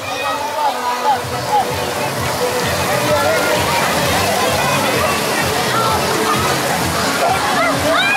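Shallow pool water splashing and sloshing in a steady wash, with many children's voices and music in the background.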